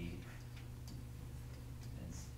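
A few faint, irregular clicks of a stylus tapping and writing on an interactive whiteboard, over a low steady hum.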